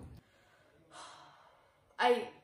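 Near silence, broken about a second in by a faint breathy sigh that fades within about half a second.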